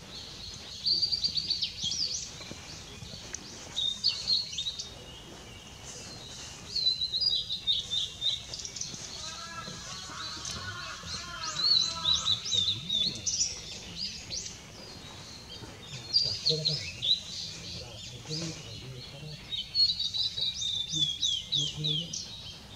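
Male blue-and-white flycatcher singing: about six phrases of high, clear whistled notes with quick sliding notes, each phrase a second or two long, with short pauses between them.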